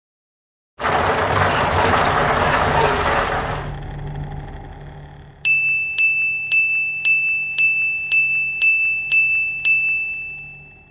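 Intro sound effects: a loud burst of noise lasting about three seconds that then fades away, followed by a row of about nine identical high, clear dings, roughly two a second, each with a sharp click at its start.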